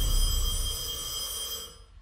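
A telephone ringing: one long, steady ring that starts suddenly with a low boom under it and dies away near the end.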